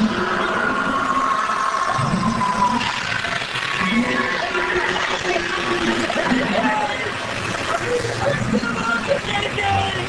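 Indistinct, overlapping voices with music in the background.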